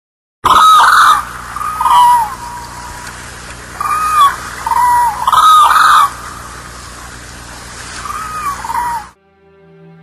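Hooded cranes calling: a series of loud, short calls that rise and fall in pitch, several birds overlapping, over a steady outdoor hiss. The calls cut off abruptly about nine seconds in and soft music begins.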